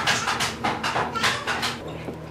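Wood fire crackling in the firebox of a masonry wood stove: a quick, irregular run of sharp pops and snaps from burning kindling. It stops just before the end.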